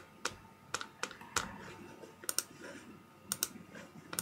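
Irregular light clicks from operating a computer while navigating a web page, about a dozen over the few seconds, some in quick pairs.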